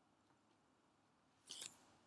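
Near silence: room tone, broken once about three-quarters of the way through by a brief, faint noise.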